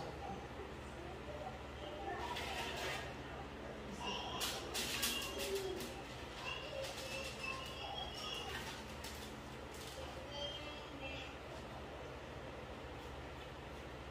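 A spoon clicking and scraping against a glass mixing bowl as cookie dough is scooped, with a cluster of sharp clicks about four to six seconds in, over a steady low hum. Short bird calls are heard in the background.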